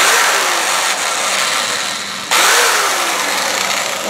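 Hand-held Black & Decker 3/8-inch electric drill running as its bit bores through a hard, winter-dried buckeye. It starts suddenly, eases a little, then gets louder again just past halfway.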